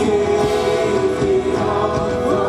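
Live contemporary worship music: several vocalists singing together in held notes over a full band.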